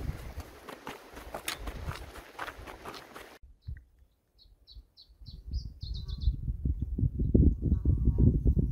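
Wind buffeting the microphone with rustling, then after an abrupt cut a small songbird sings one short phrase of about eight high chirps that speed up into a quick run. The wind rumble on the microphone picks up again after the song.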